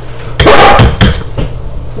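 A yellow Labrador retriever barking loudly once, about half a second in, with a few dull knocks around it.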